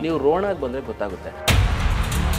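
A man speaking, then about one and a half seconds in a sudden deep boom hits and rolls on under music: a cinematic impact effect of the kind used in a TV promo.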